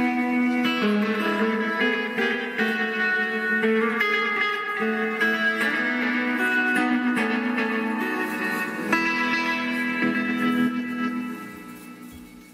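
Electric guitar played through a Multivox Multi Echo tape delay, a run of sustained notes carrying tape echo, fading out near the end.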